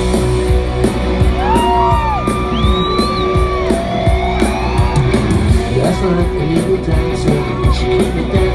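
Live rock band playing loudly through a concert PA, heard from the crowd in a large hall: steady drum beat, heavy bass and electric guitar, with gliding high notes over it.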